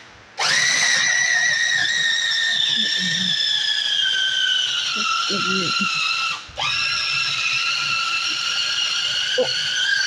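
Small electric food processor (mini chopper) blending chickpeas, tahini, olive oil, lemon and garlic into hummus. Its motor whines, the pitch sinking slowly as it runs. It starts about half a second in, stops for a moment about six and a half seconds in, then runs again.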